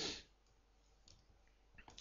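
A few faint, scattered computer keyboard keystrokes against quiet room tone.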